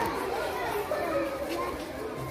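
A group of children chattering, several voices overlapping.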